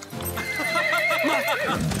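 A horse whinnying: one long, quavering neigh starting about half a second in and falling away near the end, over background music.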